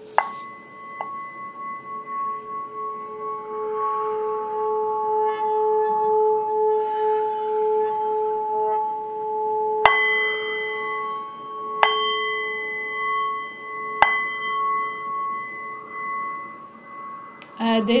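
Brass singing bowl struck with a wooden mallet, its ringing tone held for several seconds with a gentle pulse. It is struck three more times, about ten, twelve and fourteen seconds in, each strike bringing back a brighter ring.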